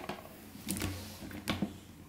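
Plastic dinosaur toy figures knocking against each other and against a wooden tabletop as they are made to fight: a few light knocks and clicks.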